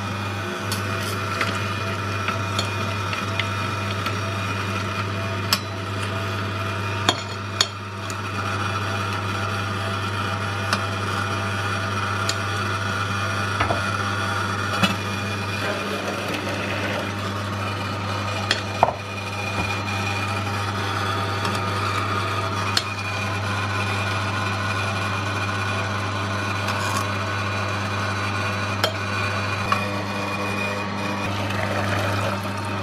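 Angel Juicer, a stainless-steel twin-gear juicer, running steadily while it crushes pomegranate seeds: a constant low motor hum under a grinding noise, with a few sharp clicks, the loudest about 7 and 19 seconds in.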